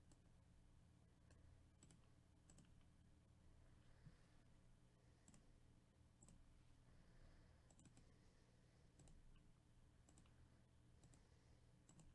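Near silence: faint, scattered computer mouse clicks, about one every second, over a faint steady low hum.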